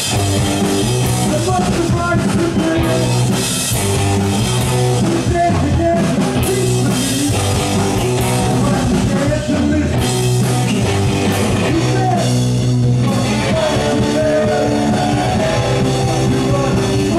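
Live garage-punk rock band playing: electric guitars, combo organ and drum kit, loud and steady, with held bass notes under sustained organ chords.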